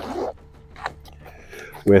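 A zipper on a camouflage tactical pack pulled open in one quick sweep at the start, then quiet handling with a single light tick a little under a second in.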